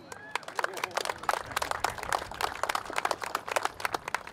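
Audience applauding: a burst of many hands clapping that starts a moment in and dies away near the end.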